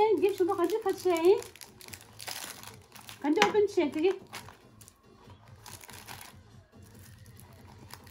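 Crinkling and rustling of thin plastic packaging as small toy makeup pieces are handled, in short crackly bursts. A voice is heard at the start and again about three seconds in.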